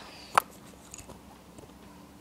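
Handling noise from a handheld phone being swung around: one sharp click about half a second in, then quiet room tone with a few faint clicks.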